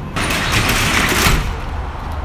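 Metal roll-up rear door of a box moving truck rattling as it is pulled down on its track, for about a second and a half before it tapers off.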